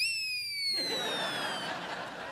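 Comic reaction sound effect: a high ringing tone that rises in with a quick swoop, then slides slowly down in pitch and fades out with a hiss underneath.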